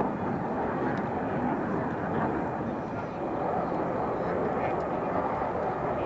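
Fighter jet engine noise during a low-level flying demonstration: a steady rush that holds at about the same level throughout.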